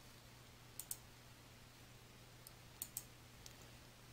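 Near silence with a few faint computer clicks, a pair about a second in and another pair near three seconds in, over a faint low hum.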